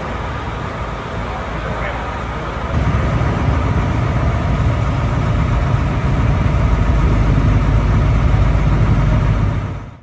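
Voices outdoors for the first few seconds. Then, about three seconds in, a sudden change to a steady low engine rumble from a waiting coach bus and its police motorcycle escort, fading out at the very end.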